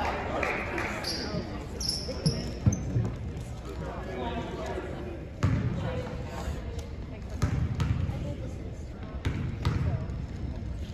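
Basketball bouncing on a hardwood gym floor, a handful of separate bounces, under steady spectator chatter in the gym.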